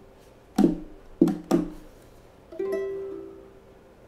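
Two ukuleles strumming the song's closing chords: three short strums, then a final chord about two and a half seconds in that rings out and fades.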